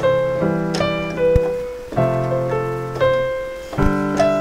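Piano playing a slow chord progression in C: low chords held and changing about every two seconds, with shorter higher notes struck over them. The progression is la–mi–fa–so (A minor, E minor, F, G).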